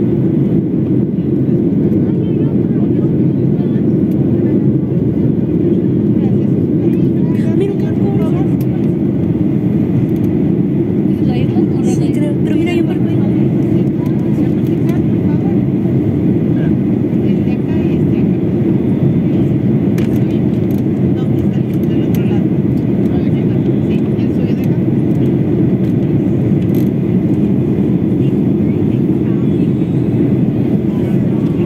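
Jet airliner cabin noise during the descent to land: the engines and the air rushing past the fuselage make a steady, low, unchanging drone.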